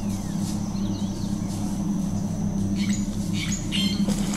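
Birds chirping: a faint twittering call about half a second in and a quick run of short high chirps near the end, over a steady low hum.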